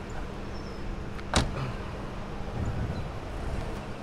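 A car door shutting once, a single sharp thud about a second and a half in, over a low steady hum.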